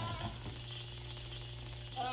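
Steady hiss of scene ambience from the TV episode's soundtrack, with a thin high whine above it and a low hum beneath.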